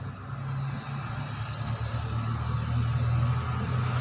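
A steady low motor rumble that slowly grows louder, like an engine running nearby.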